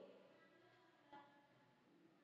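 Near silence on the call, with one faint click about a second in.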